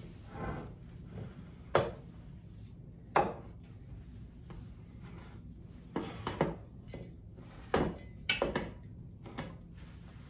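Metal kitchen canisters, their lids and a glass jar being set down and shifted on a wooden riser board: a series of sharp clinks and knocks, spaced out at first and bunched together near the end.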